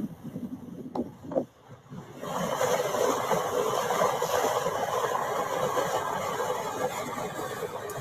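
Steady rushing wind and road noise in the cab of a moving vehicle, coming in suddenly about two seconds in after a couple of light knocks.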